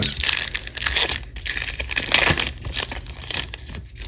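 Foil wrapper of a baseball card pack crinkling as it is torn open by hand: a dense run of small crackles.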